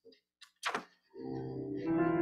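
A single sharp knock about a third of the way in, then piano music starts softly about a second later, with held chords.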